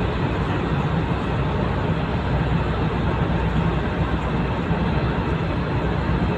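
Steady, unbroken rumbling noise, heaviest in the low end, with a hiss over it and no distinct events.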